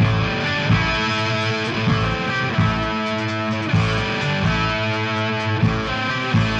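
Heavy metal band recording: electric guitar playing sustained chords over drums, the full band coming in at once after a sparse drum intro.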